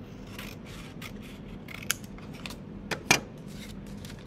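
Scissors cutting construction paper in a few separate snips, with paper rustling. A sharp click about three seconds in is the loudest sound.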